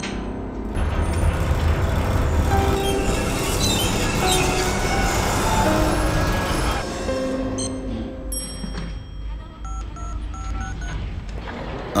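Tense film background music over a low rumble, loud for about the first seven seconds, then dropping to a quieter, sparser passage.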